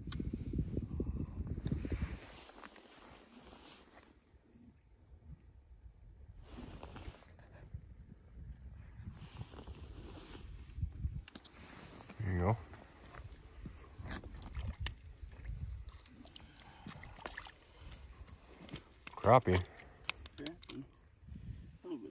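Wind noise on the microphone, heaviest in the first two seconds and then low and uneven, with a man's brief voice about twelve seconds in and again near the end.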